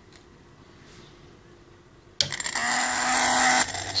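Small DC motor starting suddenly about halfway through and whirring steadily, driven by a 555-timer PWM circuit with its potentiometer turned to zero: the 555 cannot give a zero duty cycle, so the motor already runs at very low power.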